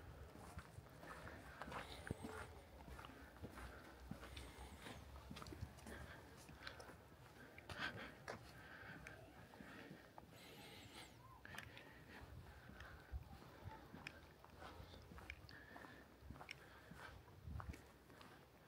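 Near silence: faint outdoor ambience with scattered soft ticks and faint distant voices.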